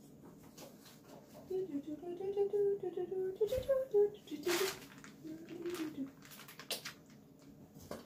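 A person's voice away from the microphone, wordless and distant, rising and falling for a few seconds. Several sharp clicks and knocks come in the middle, along with one short hiss.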